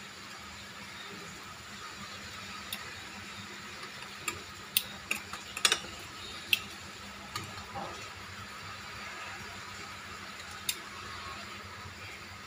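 A handful of light clicks and taps as orange pieces are dropped into a portable blender's plastic cup, most of them in the middle, over a faint steady hiss.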